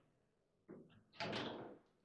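Table football play: a sharp knock about two-thirds of a second in, then a louder clattering impact lasting about half a second from the ball and rods striking the table.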